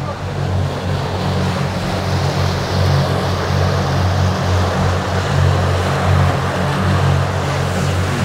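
A 40 hp outboard motor running steadily under way, a constant low drone, with the rush of the churning wake behind the boat.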